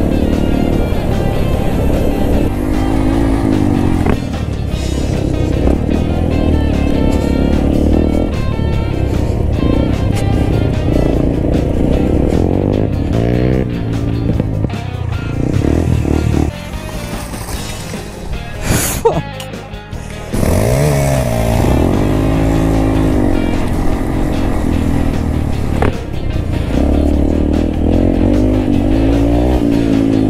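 Music over motorcycle engines, including the Honda Grom being ridden, revving up and down. There is a brief quieter stretch a little past halfway, then a rev rises again.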